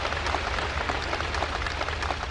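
Audience applauding: many hands clapping together at a steady level.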